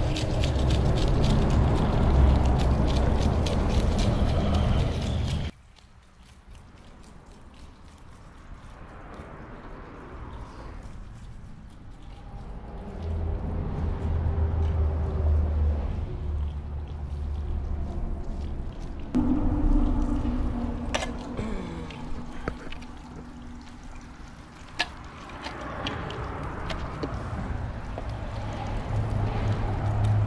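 Knife scraping the scales off a curimba on a rough stone slab: a fast run of scratchy strokes that stops abruptly about five seconds in. After that comes quieter outdoor sound with a low rumble, and around twenty seconds in a short tone that slides down in pitch.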